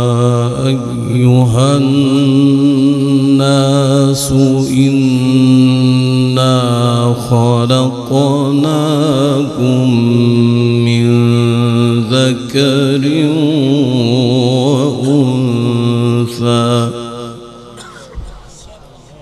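A male qari reciting the Quran in melodic tajwid style, holding long notes with wavering ornamentation and sweeping runs, phrase by phrase with short breaths between. The voice trails off about a second before the end.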